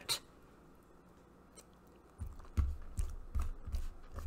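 Near silence, then from about halfway an irregular run of soft low thumps and small clicks, like things being handled close to the microphone.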